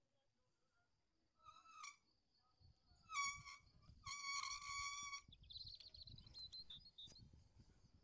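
Faint outdoor sounds: three horn-like honks, short at about one and a half and three seconds in, then one held steady for about a second, over a faint steady high whine and low rumble.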